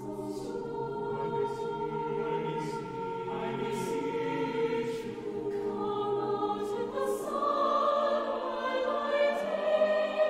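Mixed SATB choir singing sustained, legato lines, with sharp 's' consonants sounding together several times. About three-quarters through, the lowest voices drop out and the upper voices swell louder toward the end.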